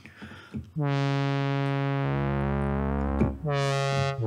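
Roland Zenology Pro software synthesizer on its 'JX Cream' patch, with a sawtooth virtual-analog oscillator, playing sustained chords. A deep bass note joins about two seconds in, and the chord is released and a new one struck a little after three seconds.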